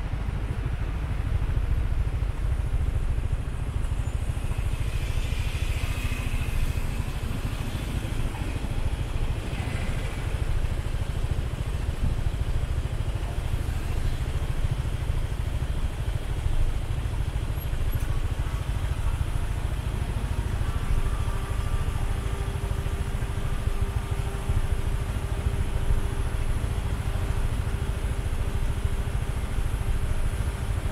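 Motorcycle engine idling while stopped at a traffic light, a steady low rumble mixed with the sound of surrounding traffic. A faint steady hum joins about two-thirds of the way through.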